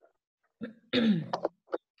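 A woman clearing her throat about a second in: a brief rough sound in two or three short parts.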